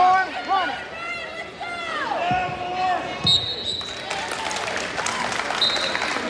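A referee's whistle blown in two short blasts, a steady half-second one a little after three seconds in and a briefer one near the end, stopping a wrestling bout. Before it, voices shout from the stands of a gym, a couple of dull thumps land on the mat, and crowd noise carries on under the whistle.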